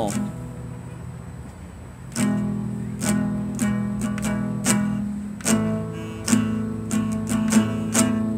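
Nylon-string classical guitar played by a beginner at his first lesson. A chord rings and fades, then slow strummed chords start about two seconds in and repeat roughly once or twice a second.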